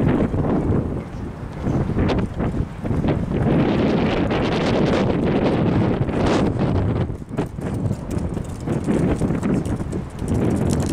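Gusty wind buffeting the camera's microphone: loud, uneven rushes of low rumble that swell and ease, with a brief lull a little past the middle.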